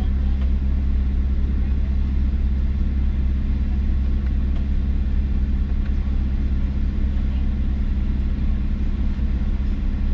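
Toyota Supra MK5's 3.0-litre turbocharged inline-six idling steadily, a low even hum heard from inside the cabin with the car standing still.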